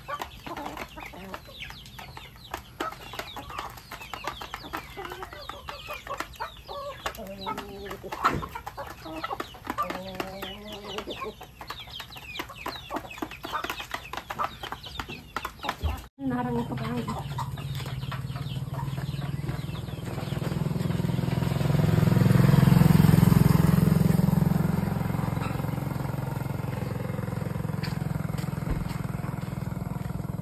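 A flock of chickens, many chicks peeping with hens clucking among them. About halfway through, the sound cuts off abruptly and a steady low rumble takes over, swelling loud for a few seconds and then settling.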